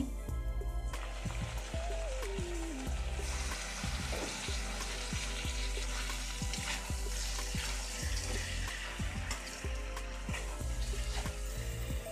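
Potatoes sizzling and simmering in a metal kadhai as a steel ladle stirs them, with short clinks and scrapes of the ladle against the pan. Background music plays under it.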